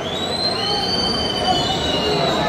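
Several shrill, drawn-out whistles at different pitches from spectators in an ice hockey arena, rising slightly in pitch and fading out near the end, over a steady murmur of the crowd.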